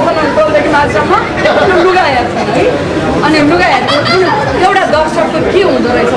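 Lively chatter of a group of people talking at once, several voices overlapping with no pause.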